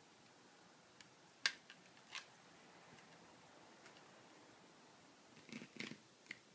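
Plastic toy tools being handled and knocked together: a few sharp clacks, the loudest about a second and a half in, then a quick cluster of clacks near the end.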